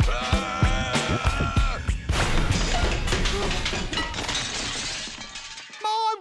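Cartoon soundtrack music with a held sung note, cut off about two seconds in by a loud crash-and-shatter sound effect whose noisy trail fades away over the next few seconds.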